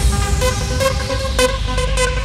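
Bounce-style electronic dance track in its instrumental intro: held synth chords over a steady bass, with a few sharp hits and no vocals yet.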